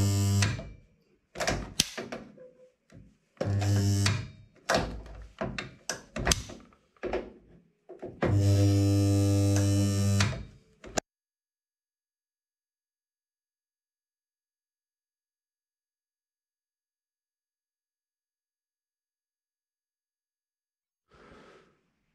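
Transformer spot welder firing spot welds on steel sill panels: three welds, each a loud steady buzz of mains hum, the last lasting about two seconds, with clunks and clicks of the tongs between them. The welder is going back over spot welds with freshly sharpened electrode tips to make sure they have fused. The sound cuts off about halfway through.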